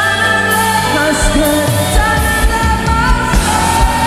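Christian worship music: a woman singing long, held notes into a handheld microphone over sustained band accompaniment. A steady low drum beat of about two strokes a second comes in about a second in.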